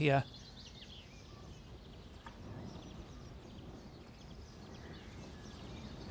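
Quiet open-air ambience with a few faint bird chirps.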